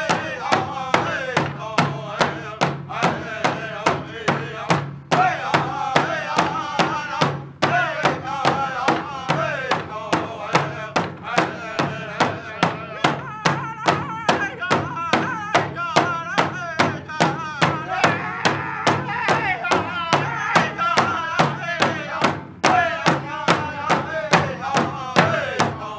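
Powwow drum group singing a traditional honor song: several voices singing together over a large shared hand drum struck in a steady beat, about two strikes a second, with a few brief pauses between phrases.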